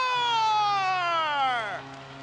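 A play-by-play announcer's drawn-out shout of a goal call, one long held note sliding slowly down in pitch for nearly two seconds, over a faint steady low hum.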